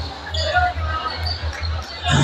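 A basketball being bounced on a concrete court during a game, under crowd murmur and scattered faint voices.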